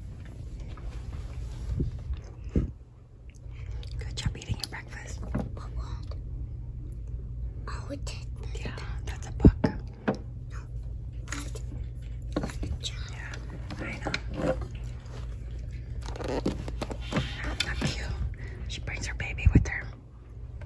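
A child eating with a plastic spoon from a plastic food container: a few sharp taps of spoon on container, with soft whispered voices and a steady low hum underneath.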